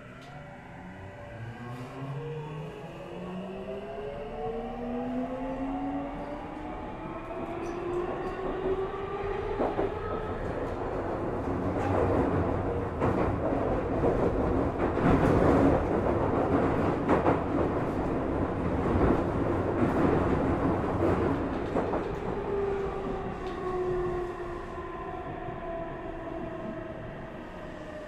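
Tokyu 3000 series train's Toshiba IGBT VVVF inverter and traction motors whining in a set of rising tones as it pulls away, then louder wheel-on-rail noise with clicks over rail joints. Near the end the whine falls in pitch as the train slows under regenerative braking.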